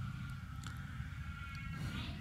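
An alarm clock tone sounding: a steady high electronic note held for nearly two seconds before it stops, over a low rumble.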